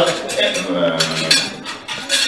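Cutlery and dishes clinking at the tables in a few sharp strikes, with a man's voice held in a drawn-out sound in the middle.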